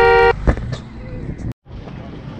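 Two-tone vehicle horn: the end of a run of short toots, with one last held note that cuts off about a third of a second in. Then street noise, broken by a brief silent gap about one and a half seconds in.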